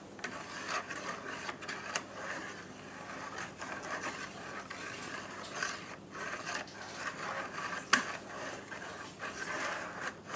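Wire whisk beating thin crepe batter in a bowl: rapid, continuous scraping and clicking of the wires against the bowl through the liquid, with one sharper knock about eight seconds in.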